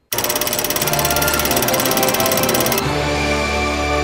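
Closing theme music of a TV show starts abruptly and loud, with a fast steady beat and sustained bass notes.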